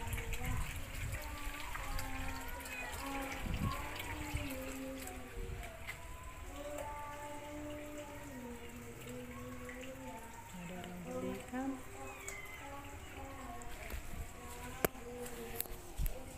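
A distant voice singing in long held notes that step from pitch to pitch, with no clear words.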